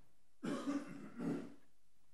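Two soft coughs or throat-clearings, short and about a second apart, in a quiet meeting room.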